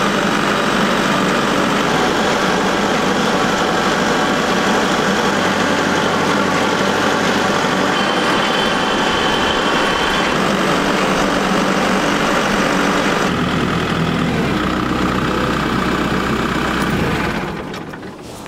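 Compact tractor engine running steadily while the tractor drives along, towing a log splitter; the engine is switched off with the key near the end and the sound falls away.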